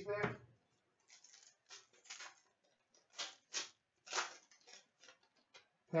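Hockey trading cards slid one by one off a freshly opened pack: a string of short, soft swishes of card stock at uneven intervals.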